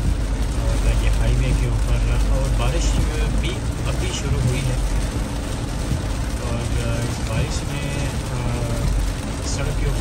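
Steady in-cabin road and rain noise from a car driving on a soaked highway in a heavy downpour, with a low rumble underneath. A voice talks over it.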